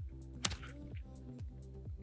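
One sharp slap about half a second in: a leather slapjack with a lead-weighted end striking a bare stomach. Steady background music plays under it.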